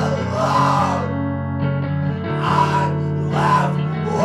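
Rock band demo recording: electric guitars ringing out held chords over bass, with two loud swells that rise and fall, one at the start and one near the end.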